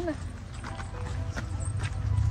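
A few crunching footsteps on a gravel path, irregularly spaced, over a low wind rumble on the microphone.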